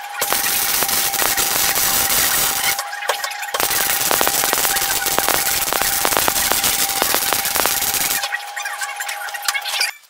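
MIG welder arc crackling and spitting as steel box-section tube is welded, in two runs: one of under three seconds, then after a short break a longer one of about four and a half seconds.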